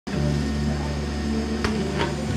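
Metalworking tool running against steel overhead under a car, throwing sparks: a steady hum with a single sharp click about one and a half seconds in.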